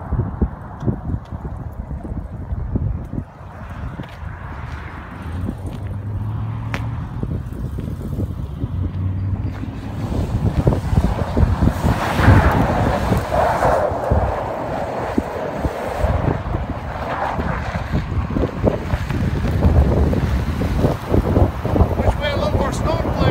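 The 2000 Ford E250 van's 5.4 Triton V8 driving past, with wind buffeting the microphone. It gets louder about ten seconds in as the van comes close.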